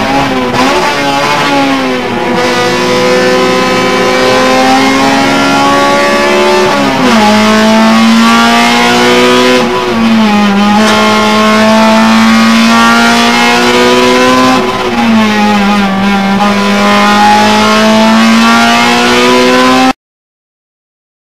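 Honda Civic EG6's four-cylinder engine at high revs, heard from inside the cabin on a race track: the pitch climbs steadily through each gear and drops sharply at upshifts about seven and fifteen seconds in, with brief dips near the start and around ten seconds.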